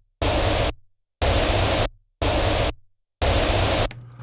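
Pink noise played back as a looped kick-and-snare pattern: each burst is pink noise recorded at the level of the kick or snare stem. The bursts are even hiss about half a second long, starting about once a second, each stopping abruptly with silence in between.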